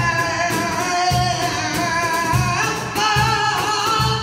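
Live flamenco siguiriya: a man sings long, wavering held notes over flamenco guitar, with a few low cajón strokes beneath.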